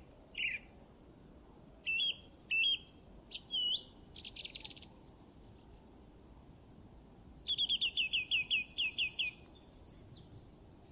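Bird song: separate chirps and whistled notes, then a quick series of repeated falling notes about seven and a half seconds in.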